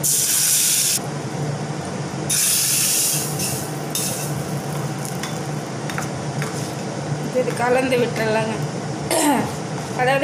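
Hot tempering oil poured from a small tadka ladle onto chilli chutney in a steel bowl, sizzling in a sharp burst that lasts about a second. Further short sizzling bursts follow over the next few seconds as a spoon stirs the tempering into the chutney.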